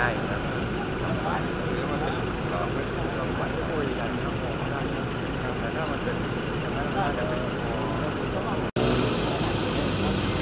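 A vehicle engine idling steadily, with people talking faintly over it.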